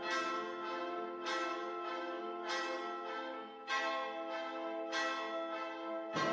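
A brass and wind ensemble with piano playing slow, sustained chords, each re-struck with a sharp bell-like attack about every one and a quarter seconds.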